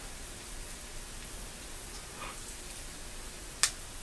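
Electrical tape being wrapped by hand around a small battery charge board: quiet handling over a steady low hiss, with one sharp click about three and a half seconds in.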